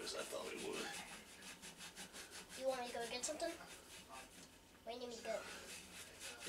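Quick back-and-forth rubbing on a metal baseball bat's barrel, about four or five strokes a second, as the bat is scrubbed clean by hand. The scrubbing stops about two and a half seconds in, and low voices are heard briefly twice.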